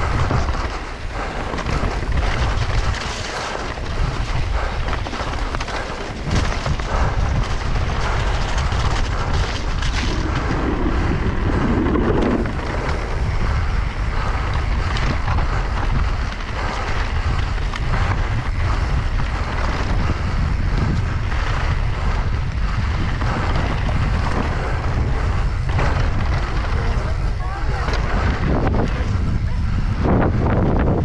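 Wind buffeting an action camera's microphone as a mountain bike descends a rough dirt trail at speed, with the tyres running over dirt and stones and frequent clatters and knocks of the bike over bumps.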